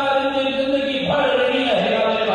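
A man's voice through a public-address system chanting a slogan in long held notes, the pitch stepping down about halfway through.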